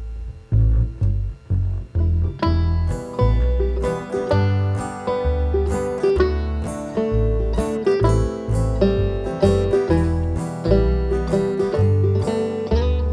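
A bluegrass-style country string band plays an instrumental break with no singing. Plucked upright bass notes change about twice a second, under strummed acoustic guitar and a bright picked lead line. The band comes in together about half a second in, after a short gap.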